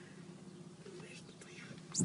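Hushed whispering from people inside a car, over a steady low hum.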